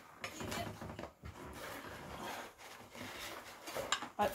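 A dog nosing and rummaging through crumpled paper inside a cardboard box: soft, irregular rustling and scraping of paper and cardboard.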